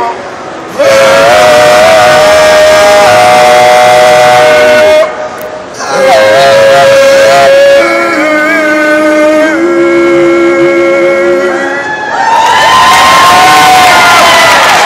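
Three male voices singing a cappella in harmony, holding long sustained chords in two phrases broken by short breaths. Near the end a crowd bursts into cheering and whooping over the last chord.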